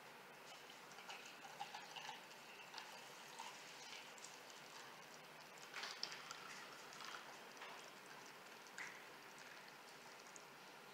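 Faint trickle of hot milk tea poured from a glass measuring cup onto ice in a cup, with a few light clicks and crackles.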